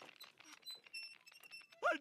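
Cartoon rope-and-pulley rig hoisting a man upright: a quick, irregular run of faint clicks and thin squeaks as the rope runs through the pulleys.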